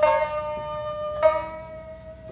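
Jiuta music for koto and shamisen: a plucked note rings out at the start and another a little past a second in, over one long note held steady underneath.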